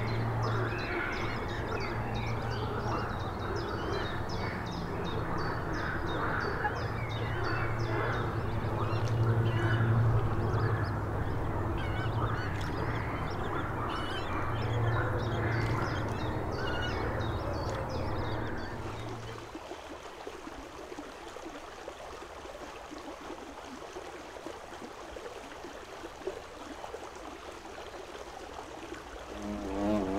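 A chorus of frogs croaking, dense and loud, which drops away about two-thirds of the way through to a much quieter background.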